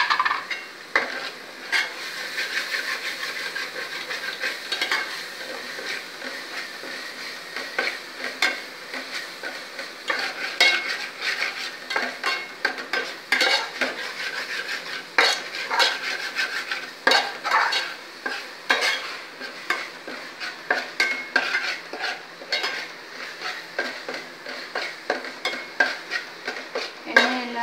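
A spoon stirring and scraping a sizzling onion-and-green-masala mix in a stainless steel pot, with frequent uneven metallic clinks and scrapes over the steady hiss of frying.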